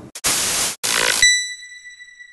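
Channel logo sound effect: two short bursts of static-like hiss, then a single bell-like ding that rings on and slowly fades.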